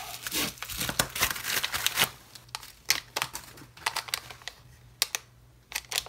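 Plastic packaging crinkling and rustling as a mailing envelope is slit open and the bag inside handled, with many sharp crackles. It is busiest in the first two seconds, then thins to a few separate clicks.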